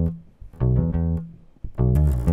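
Electric bass guitar playing a few separate plucked notes, each dying away before the next.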